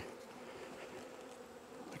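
Faint, steady buzzing of a honey bee colony on a comb frame lifted out of an open hive.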